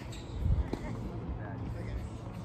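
Tennis ball knocks during a rally on a hard court: a few sharp hits and bounces off racket strings and court surface, the loudest about half a second in.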